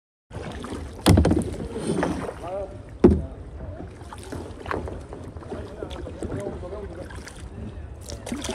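Kayak being paddled on a river: water swishing around the paddle and hull, with wind on the microphone. There are two loud knocks, about a second in and about three seconds in.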